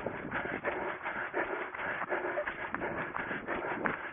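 A runner's footfalls on grass in a steady running rhythm, with heavy breathing close to the body-worn microphone.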